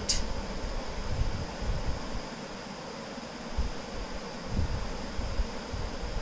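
Steady background hiss with a faint high whine running through it, like a fan or air-conditioner in the room, and a few soft low bumps scattered through.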